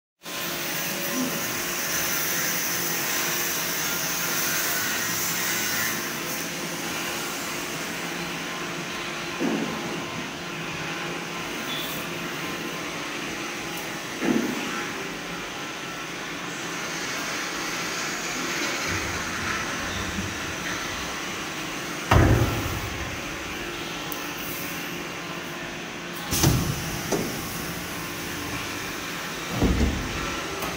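Steady machine noise from a CNC paper tube cutting machine, broken by five sharp knocks spread through, the loudest about two-thirds of the way in.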